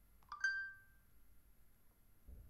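A short two-note electronic chime about half a second in, dying away within half a second, over faint room tone.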